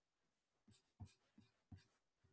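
Near silence: room tone with four faint, short taps or rustles in the second half.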